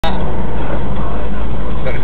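Steady engine and road noise of a car driving, heard inside the cabin through a dashcam microphone.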